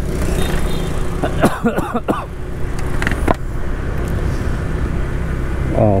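Steady low rumble of a motorbike being ridden along a city street: its engine running with road and wind noise. A few faint voices come through briefly about one and a half seconds in.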